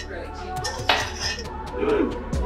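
Metal pots and pans being handled on a stovetop, clinking, with one sharp clank about a second in.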